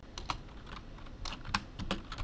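Computer keyboard being typed on: a run of irregularly spaced keystrokes as code is entered.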